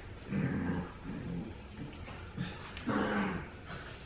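Two puppies growling in play while tugging on a rope toy. There are several low growls, the longest about half a second in and about three seconds in, with shorter ones between.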